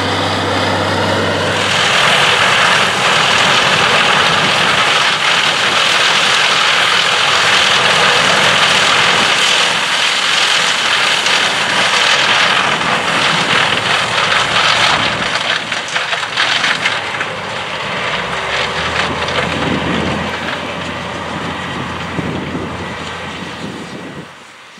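A tractor engine running steadily for about two seconds, then the loud, steady machine rush of a Claas Lexion 750 combine harvesting corn, driven by its Caterpillar C13 engine. The combine noise eases somewhat in the last several seconds as a low engine hum comes back in.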